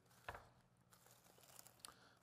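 Near silence with faint handling sounds of hands pressing damp sphagnum moss and a staghorn fern against a wooden board: a soft tap about a third of a second in and a few faint rustles near the end, over a low steady hum.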